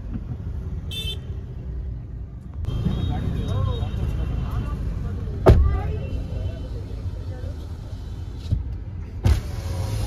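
Low, steady vehicle rumble of busy street traffic heard from inside a car, with faint, muffled voices. A single sharp knock about halfway through is the loudest sound.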